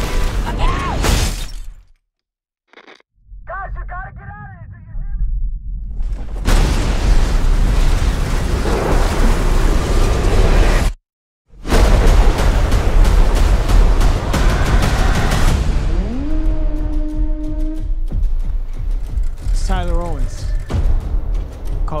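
Trailer sound mix of a tornado chase: loud storm roar and booming hits under music, dropping abruptly to silence about two seconds in and again about eleven seconds in.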